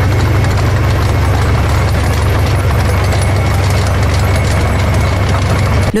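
Heavy military vehicle engine idling steadily and loudly, a deep low-pitched drone with a broad noisy rush above it, cutting off just before the end.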